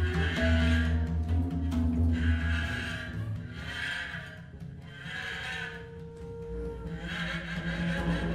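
Free-improvised ensemble music: a double bass holds long low notes under a long bamboo flute playing sustained, breathy tones that swell in and out in phrases, with the music thinning for a moment mid-way.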